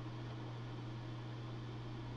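Background noise in a pause: a steady low hum with a faint hiss over it, and no other event.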